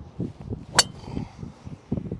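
Srixon ZX5 Mark II driver striking a golf ball off the tee: one sharp crack of impact a little under a second in. Gusty wind rumbles low on the microphone around it.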